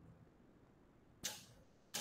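Near silence broken by two short, sharp noises, one just past a second in and one at the end, each fading away quickly.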